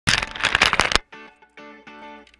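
Loud rustling and crackling of a hand handling the camera right at the microphone for about a second, cutting off suddenly. Intro music follows, plucked guitar-like chords in short repeated notes.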